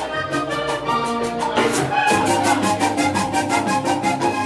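Live vallenato band playing an instrumental passage: a button accordion carries the melody over a steady beat of hand percussion.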